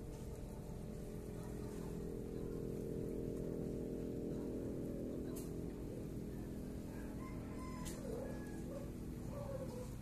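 A steady low hum made of several held pitches runs on and fades out near the end. Over its last few seconds a bird calls a few short times.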